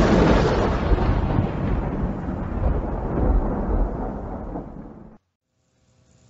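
A thunder-like rumble sound effect, loud at first and slowly fading over about five seconds, then cutting off abruptly.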